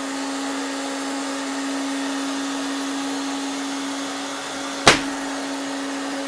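Cleanmaxx shirt ironer's hot-air blower running steadily, a constant hum over a rush of air. About five seconds in there is one sharp knock, as the fabric cover slips off a base that was not tightened properly.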